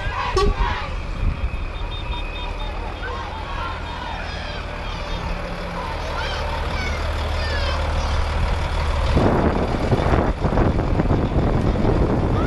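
Diesel engine of a Volvo lorry running low and steady as it pulls a float past, with crowd voices around it. About nine seconds in the sound grows louder and noisier.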